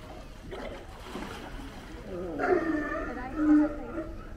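California sea lions barking: a run of calls from about halfway through, ending in one loud, steady-pitched call near the end.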